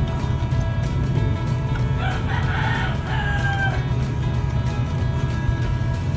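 A rooster crowing once, a call of under two seconds starting about two seconds in and ending on a held, slightly falling note, over steady background music.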